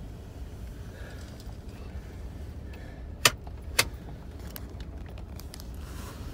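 Pickup truck's engine heard from inside the cab as it rolls slowly, a steady low rumble. Two sharp clicks about half a second apart come a little past the middle.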